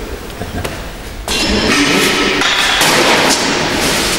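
Knocks and glass clinks from a hand lever corker pressing corks into glass wine bottles, starting suddenly about a second in.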